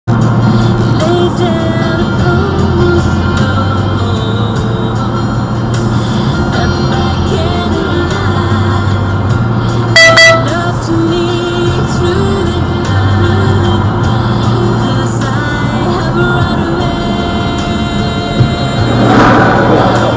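Music playing on a car radio, heard inside the car, with a brief loud tone about halfway through.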